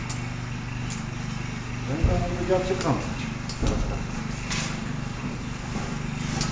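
An engine running steadily at idle, with a low even hum. A few words of speech come in briefly about halfway through, and there is a low knock just after.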